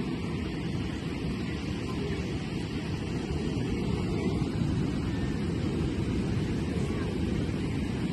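Ocean surf breaking on a rocky beach: a steady, low rush of waves.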